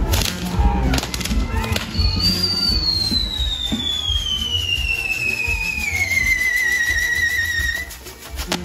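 A whistling firework gives one long whistle that starts about two seconds in, slowly falls in pitch for some six seconds, then cuts off. Music with a heavy low end plays underneath, and a few sharp pops come near the start.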